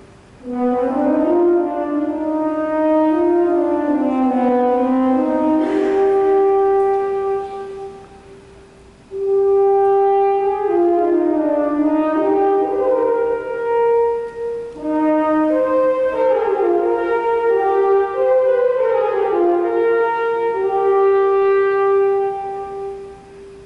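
French horn playing a slow solo melody in held notes, with a second line sounding alongside it at times. The phrase breaks off for about a second around eight seconds in, then the melody resumes.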